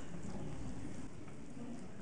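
Low, steady room noise in a hall, with faint rustling.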